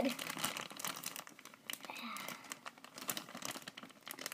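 Clear plastic bag crinkling as it is handled by hand: a rapid, irregular run of small crackles.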